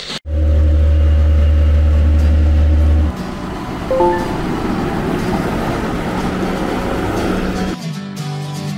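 A loud, steady low hum for about three seconds, then a John Deere 6155R tractor's six-cylinder diesel engine running as it pulls a slurry tanker, with a few short tones about four seconds in.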